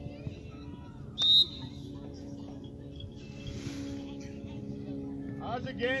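Referee's whistle: one short, sharp blast about a second in, the loudest sound here, over a steady low hum and distant voices.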